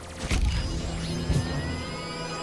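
Cartoon transformation sound effect for the Omnitrix being slapped: a sudden heavy hit with a low rumble about a quarter second in, then held musical tones and a slowly rising whine.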